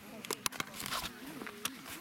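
Indistinct voices of people talking in the background, with several sharp clicks.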